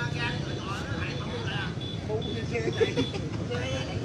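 Steady low rumble of passing motorbike traffic, with people's voices calling out over it.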